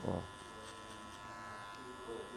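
Electric hair clipper running steadily with an even hum, its lever open at the high zero setting, as it cuts the short hair at the base of a fade.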